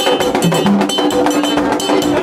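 Haitian Vodou drum ensemble of tall hand drums playing a fast, dense rhythm, with a metal bell struck along with it.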